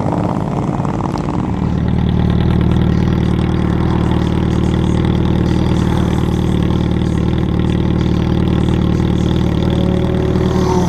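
Several motorcycles idling together, then from about a second and a half in a single motorcycle engine idling steadily close by.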